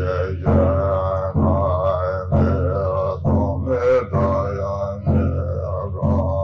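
A deep male voice chanting Tibetan Buddhist liturgy in a low, near-monotone drone, starting a new phrase about once a second.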